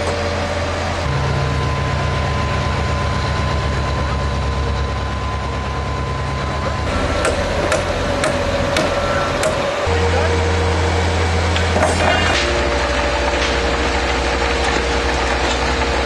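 A framing hammer striking a wooden form board about six times in quick succession, starting about seven seconds in, over a steady low drone that changes pitch in steps; a brief rattle follows near twelve seconds.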